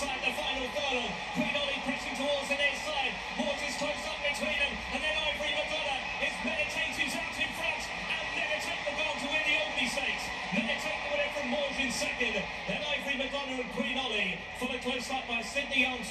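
Horse-race commentary, a man's voice calling the finish, over music.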